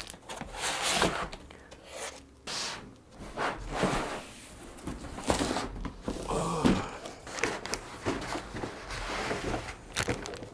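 A large cardboard box being opened and its packaging handled: irregular scraping, rustling and knocks of cardboard flaps and foam inserts, with plastic sheeting crinkling toward the end.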